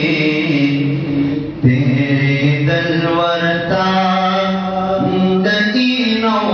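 A man singing a Pashto naat in long held notes that step up and down in pitch, with a short break for breath about one and a half seconds in.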